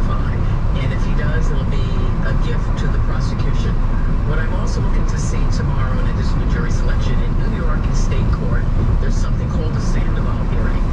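Steady low rumble of road and engine noise inside a moving car on a wet freeway, with a talking voice running underneath it.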